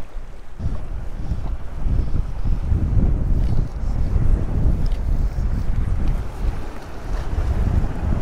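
Strong wind buffeting the camera microphone: an uneven low rumble that sets in about half a second in and rises and falls in gusts.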